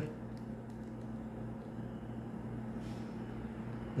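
Steady low room hum with a few faint clicks of TI-89 Titanium calculator keys being pressed with the thumbs.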